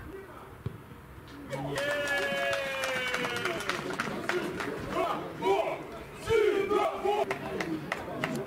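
Footballers' voices on an open pitch celebrating a converted penalty. A long, slightly falling shout starts about a second and a half in, followed by more shouts and cheering a few seconds later.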